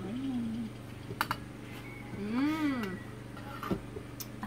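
A short low murmur, a sharp click about a second in, then one drawn-out vocal sound that rises and falls in pitch, over a steady low hum.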